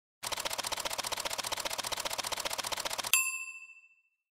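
Intro sound effect: fast, even mechanical clicking, about a dozen clicks a second, for about three seconds, cut off by a single bright bell ding that rings out and fades within a second.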